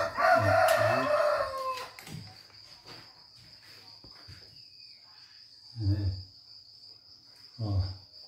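A rooster crowing once, a long call of just under two seconds that drops in pitch at its end, over the steady high trill of crickets.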